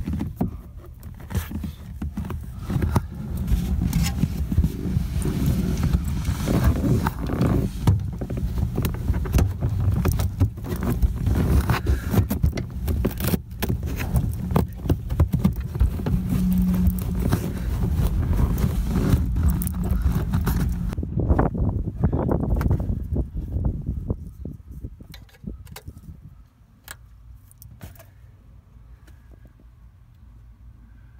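Deep, loud bass playing through a 2004 Lincoln LS THX sound system's newly installed rear-deck speakers and subwoofer, with a busy clicking rattle over it. It falls away to a low background about 24 seconds in.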